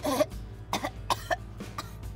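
A woman coughing and gagging in about four short bursts, her reaction to a shot of pure lemon juice concentrate.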